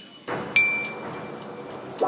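Pinewood derby start gate drops with a sharp metallic clack and brief ring about half a second in, and the wooden cars roll down the aluminum track with a steady rushing noise.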